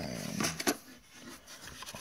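Cardboard ammunition boxes handled in a wooden box: two sharp knocks about half a second in, then faint rubbing and shuffling.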